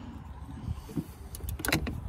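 Low handling noise, then a few light metallic clicks near the end as a battery cable's terminal clamp is handled at the battery post.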